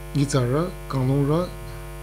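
A newsreader speaking in Sangtam over a steady low hum, with a short pause near the end.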